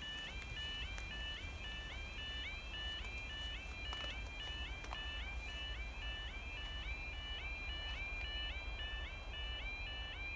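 The level crossing's electronic yodel alarm is sounding continuously: a rapid, repeating pattern of rising warbling tones. It warns that a train is approaching while the barriers are down. A low rumble runs underneath.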